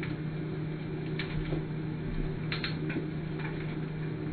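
Quiet room tone: a steady low hum with a few faint clicks, about a second in and twice more past the middle.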